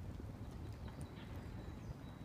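Campfire crackling, with irregular sharp pops over a low steady rumble.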